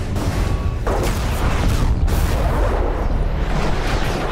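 Several Tomahawk cruise missiles launching one after another, each rocket booster firing with a loud blast of rushing noise. Fresh blasts come about one and two seconds in.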